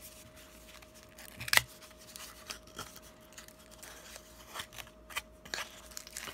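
Cardboard card-deck box being handled and its tuck flap pried open: scattered small clicks and scrapes of card stock, the sharpest click about a second and a half in.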